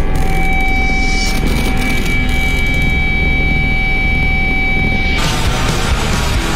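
Loud vehicle engine noise mixed with music, with a steady high tone held over it until about five seconds in, when a broad noisy wash takes over as the music builds.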